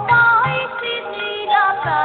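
Bengali kirtan: a woman sings a melodic, ornamented line, accompanied by repeated low strokes on khol drums.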